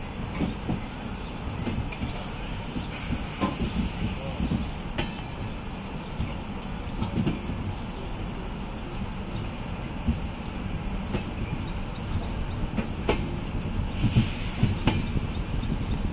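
Indian Railways passenger train running on the rails, heard from beside a moving coach: a steady rumble of wheels on track with a few sharp clacks scattered through, getting a little louder near the end.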